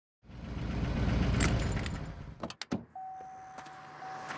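A car engine running, then cut off with a few sharp clicks and a jangle of keys, followed by a thin steady electronic tone.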